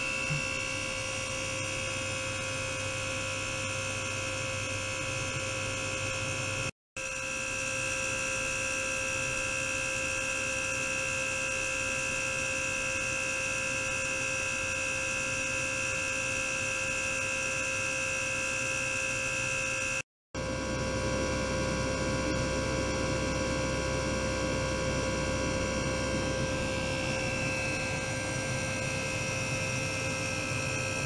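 A steady hum made of several held tones from running lab equipment, broken twice by a brief dropout to silence.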